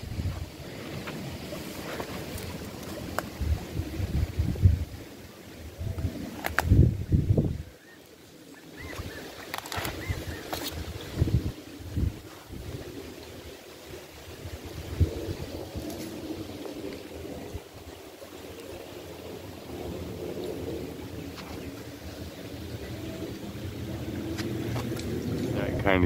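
Shallow creek water running over rocks, with gusts of wind buffeting the microphone.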